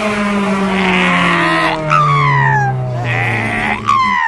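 Honda Civic Si engine heard from inside the cabin, its note falling steadily as the revs drop, with a sharp click or knock about halfway through and again at the very end.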